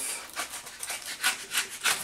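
A knife cutting through the tape and cardboard of a small box, with the cardboard flaps scraping as they are pried open: a quick, irregular run of short rasping scrapes.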